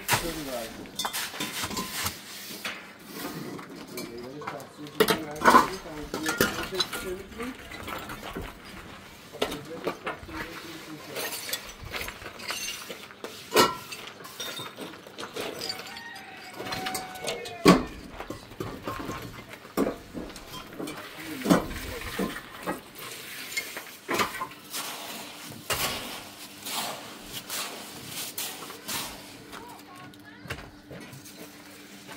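Irregular clinks and knocks of objects being handled, scattered throughout, with voices in between.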